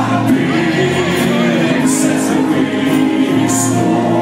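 Rock band playing live, with drums, guitar and singing.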